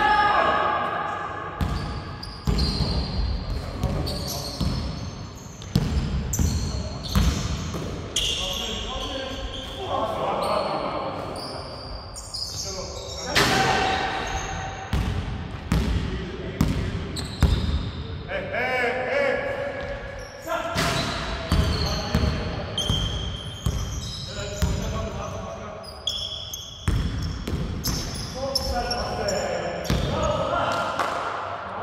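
Basketball bouncing repeatedly on a hardwood gym floor during a game, with players' shouts and calls. It all echoes around a large sports hall.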